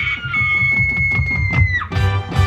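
Marching band playing its field show music: a high held note that slides down in pitch near the end, over a quick, steady low beat.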